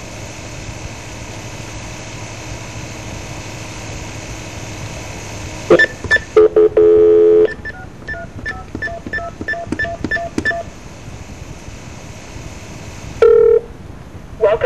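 Telephone line hiss, then about a second of steady tone followed by touch-tone (DTMF) dialing: a run of short, evenly spaced beeps about three a second. A short tone sounds near the end as the call goes through.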